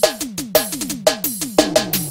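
Drum fill in a forró track: a fast run of electronic tom hits, each dropping in pitch, about six a second, with crisp cymbal-like hits over them, leading into the next song.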